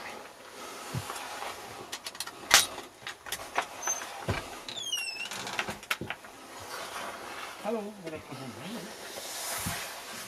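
A wooden cabin door with a metal hook latch is unhooked and opened: sharp clicks and knocks, the loudest about two and a half seconds in, and a short high squeak falling in pitch about five seconds in, typical of a dry door hinge. A man calls "hallå" near the end.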